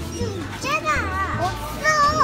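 Young children's high-pitched voices chattering.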